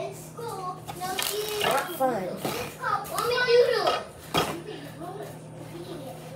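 Children's voices talking and squealing over a steady low hum, with one sharp knock about four seconds in.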